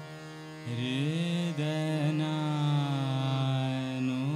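Male Hindustani classical vocalist singing slow khayal in Raag Chhaya Nat over a steady drone, with no tabla. After a short pause the voice comes in under a second in with an upward glide, then holds a long note that slowly sinks in pitch.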